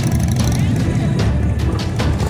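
Low, steady rumble of parade motorcycles riding slowly past, a Harley-Davidson V-twin touring bike nearest. Music and voices are mixed in.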